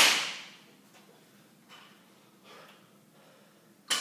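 Barbell loaded with rubber bumper plates set down on the floor twice during deadlift reps: a sharp knock at the start and another near the end, each with a short rattling ring as it dies away.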